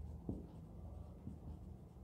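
Marker pen writing on a whiteboard: a few faint, short strokes of the nib.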